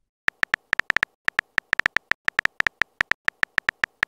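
Keyboard typing sound effect of a texting-story app: a quick, irregular run of short, pinging clicks, about eight a second, as a message is typed out.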